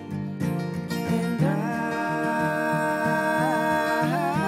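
Playback of a simple mix of acoustic guitar and sung vocals. The voice holds one long note from about a second and a half in, with a vocal plate reverb sent from the vocal tracks.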